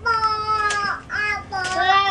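A young child's high voice in two long held notes: the first fills the first second, the second begins about one and a half seconds in.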